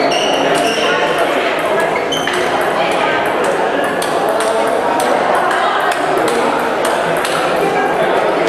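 Table tennis balls being struck by paddles and bouncing on tables: quick, sharp clicks at an irregular pace, several a second, some with a short ringing ping. Voices in the hall carry on steadily underneath.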